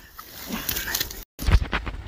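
Rustling and a few short knocks from handling, then a sudden brief dropout and a heavy low thump just after it, about halfway through.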